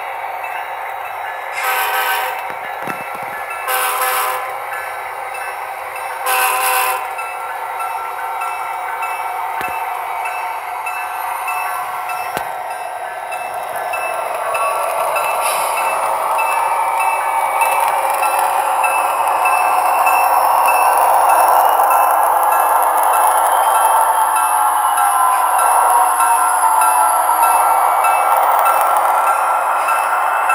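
Sound-equipped model diesel locomotives on a model railroad. Three short horn blasts come in the first seven seconds. Then the diesel engine sound from the locomotives' sound decoder grows louder as they pass, along with the running noise of the freight cars.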